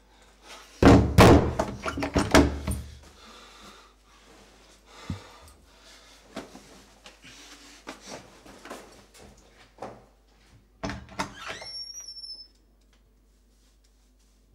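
A wooden door being pounded and rattled, loudest in a cluster of bangs about a second in, with scattered softer knocks after. A second burst of knocks comes near the end and finishes with a brief high squeak.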